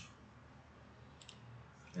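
Two quick, faint clicks about a second in, a computer mouse clicking to advance a presentation slide, over a low steady hum.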